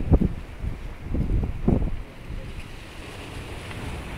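Sea waves breaking and washing over boulders at the foot of a sea wall, with wind buffeting the microphone in loud low gusts near the start and again about a second and a half in.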